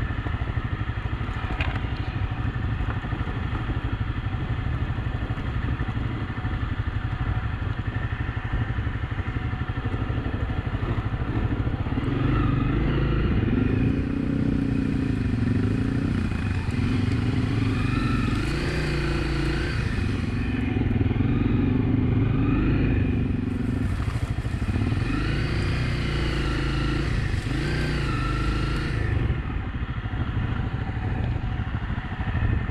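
Honda CRF250 Rally's single-cylinder engine running under way on a dirt trail, its pitch rising and falling over and over with the throttle from a little under halfway through, over a steady rumble of wind on the microphone.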